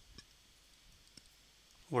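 A few faint clicks of a stylus tapping on a tablet screen while handwriting, then a man's voice starts right at the end.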